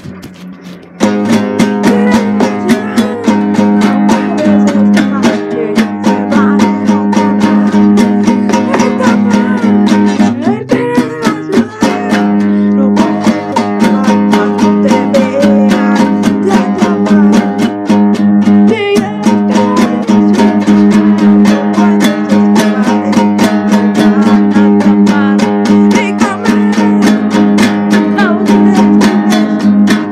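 A band playing a song live on guitar, strummed in a steady rhythm. It starts about a second in.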